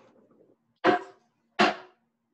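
A dog barking twice, two short sharp barks under a second apart, heard through video-call audio.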